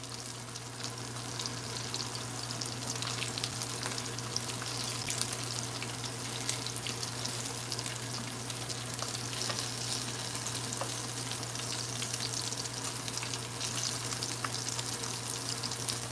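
Battered calamari rings frying in hot oil in a pan: a steady sizzle with many small crackles and pops.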